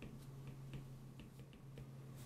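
Faint clicks and taps of a stylus on a tablet screen during handwriting, several a second and irregular, over a steady low hum.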